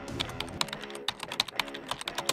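Rapid, irregular keyboard-typing clicks, likely an added sound effect, over soft background music with steady sustained notes.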